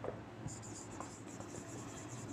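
Faint scratching of someone writing by hand, with a few soft ticks, while the word's meaning is noted down.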